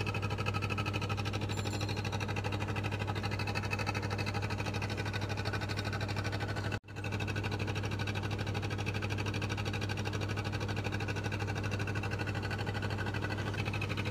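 A steady low mechanical hum with a fast, even pulse, like a motor running. It breaks off for an instant about seven seconds in and then carries on.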